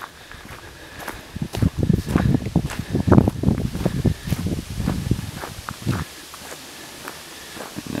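Footsteps of a person walking on a dirt and gravel road, about two steps a second, going quieter for the last two seconds.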